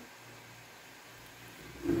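Faint steady whir of a laptop cooling fan running on a powered-up motherboard.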